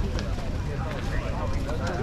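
Chatter of passing pedestrians on a crowded footpath, several voices at once, over a steady low rumble.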